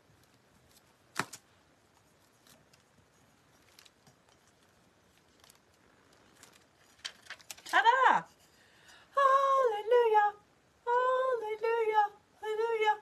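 Faint scraping and small clicks of a flat tool rubbing a transfer down onto a chalk-painted glass jar, with one sharp click about a second in. From about eight seconds a woman hums a wordless tune, louder than the rubbing.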